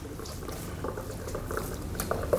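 Water running from a hand-held shower hose and splashing into a bath, with small irregular drips and splashes over a steady flow.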